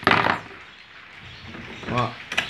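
Hands working a wing nut and through-bolt loose on a stainless-steel kayak stabilizer tube: a short, loud handling clatter at the start, then quieter fiddling with the metal parts.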